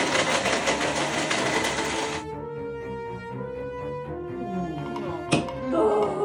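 Handheld immersion blender running in a plastic beaker of drink mixture, then cutting off about two seconds in. A single sharp click near the end.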